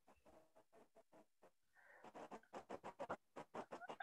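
Near silence on a video call, with faint, choppy fragments of sound in the second half: the presenter's audio is barely getting through the connection.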